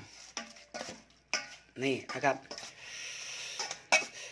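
A metal spoon stirring a wet mushroom mixture in a stainless steel bowl: intermittent clinks and scrapes against the bowl, with a longer soft scrape near the end.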